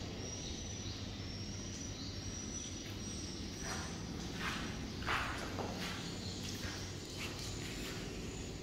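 Faint high chirps repeating at a steady pitch, roughly once or twice a second, over a low steady hum in a concrete swiftlet house. A few brief footstep-like scuffs come in the middle, the loudest just after five seconds.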